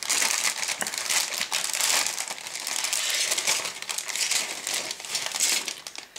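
A clear plastic bag crinkling loudly as plastic model-kit sprues are handled in it and pulled out, a dense run of sharp crackles.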